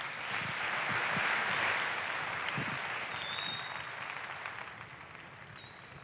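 Audience applauding, swelling about a second in and then dying away over the next few seconds.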